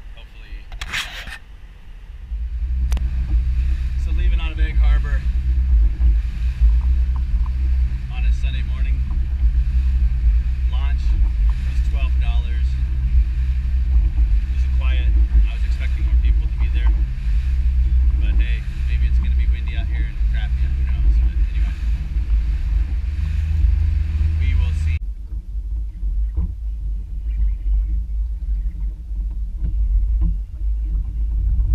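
A boat's 115 hp outboard motor running steadily under way: a loud low drone that starts about two seconds in, with wind and water noise. A few seconds before the end it cuts abruptly to a lower, duller rumble.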